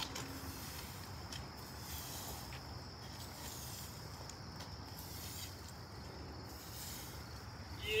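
Evergreen branch swept across asphalt, brushing up pine needles and brush in repeated faint strokes over a steady low background rumble.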